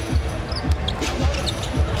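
Basketball dribbled on a hardwood court, a steady run of low bounces about two or three a second, over arena crowd noise.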